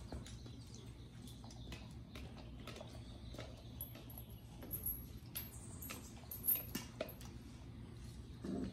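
Hanging metal chains and plastic cups of a puppy play frame being jostled by puppies: scattered light clinks, knocks and rattles, the loudest about six and a half seconds in. A steady low hum runs underneath.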